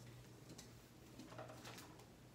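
Near silence with a few faint, short rubbing strokes of a whiteboard eraser wiping marker off the board.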